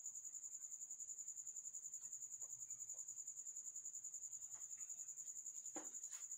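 A cricket chirping: a steady high-pitched trill in rapid, even pulses that keeps going without a break.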